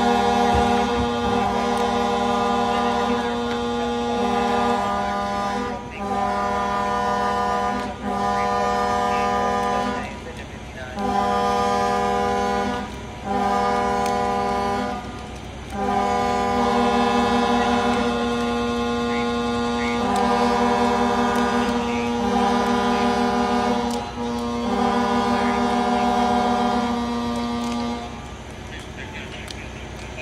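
Fire apparatus air horns sounding evacuation tones: long blasts of more than one horn overlapping, with short breaks between them, the fireground signal for firefighters to get out of the burning building. The horns stop a couple of seconds before the end.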